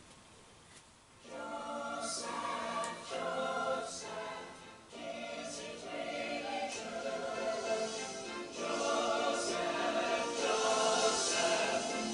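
A choir singing with musical accompaniment, played from a VHS tape through a television's speaker. It comes in about a second in, after a moment of near quiet.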